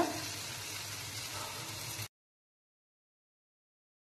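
Faint sizzling of sponge gourd curry in a nonstick frying pan as a spatula stirs it, cutting off to dead silence about two seconds in.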